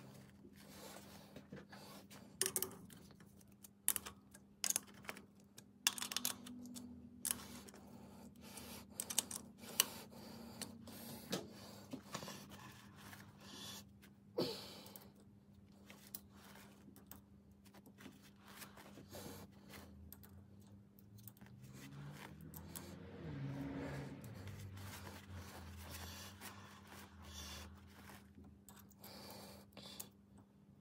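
Irregular light metallic clicks and taps from a hex key and hands working the adjusting screws of a lathe collet chuck while it is being dialed in for runout, most of them in the first half. A steady low hum runs underneath, with a soft low rumble in the second half.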